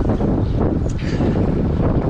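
Wind blowing across an action camera's microphone on a moving bicycle, loud and steady.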